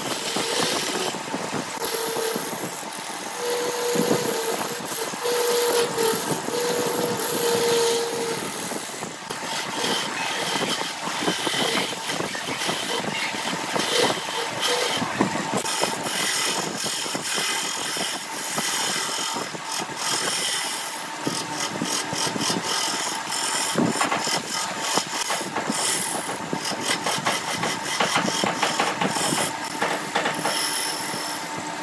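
BURT wood lathe running while a hand-held turning tool cuts a large spinning wooden disc, a steady machine hum under the rough scraping of the tool on the wood. From about halfway on, the cut turns into a rapid ticking chatter.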